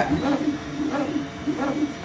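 Elegoo Neptune 4 Plus 3D printer running, its stepper motors whining up and down in pitch about twice a second as the print head sweeps back and forth filling in the layer, over a steady fan hum.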